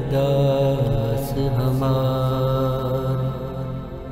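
Gurbani shabad kirtan music: a passage of steady, held pitched tones that grows quieter near the end.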